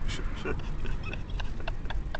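A man's stifled, high-pitched laughter in short bursts, a few a second, starting about halfway through, over the low rumble of a vehicle cabin.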